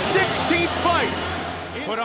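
Short fragments of a man's voice over music, with a low steady hum under them that stops just before the end.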